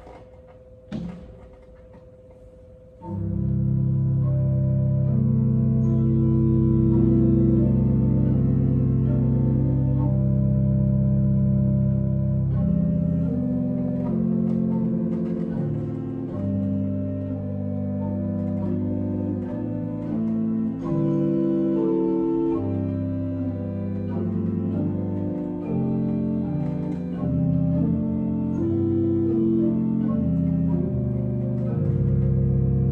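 Church organ starts playing about three seconds in, with slow held chords that change step by step. A deep pedal note sounds under the first ten seconds or so of the music, then drops out. A single click comes about a second in, before the first chord.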